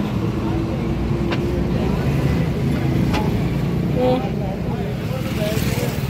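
A tractor's diesel engine running steadily at low speed, with indistinct voices talking over it.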